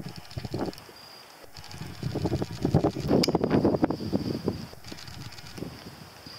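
Wind gusting and rumbling on the microphone, rising about two seconds in and easing off near the end, over a thin, steady, high insect trill.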